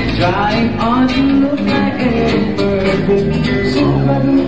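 Live reggae band playing: bass notes and rhythm guitar under a singing voice that glides through a phrase in the first second or so.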